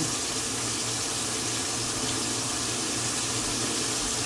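Breaded pork chops frying in a skillet of hot oil: a steady, even sizzling hiss.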